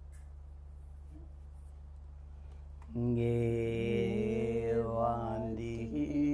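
Steady low room hum, then about halfway through a voice begins a Tibetan Buddhist prayer chant on one long held note that wavers near the end.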